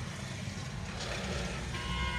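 Steady low rumble inside a car, with a short electronic beep sounding near the end.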